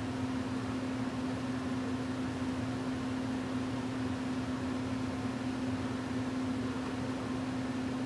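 Steady room tone: an even hiss with a constant low hum, as from a fan or electrical equipment running.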